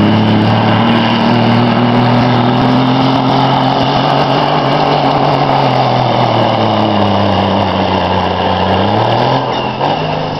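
Cabover International semi's diesel engine running flat out while pulling a weight-transfer sled. Its pitch sinks slowly as the truck works against the sled, then revs back up near the end.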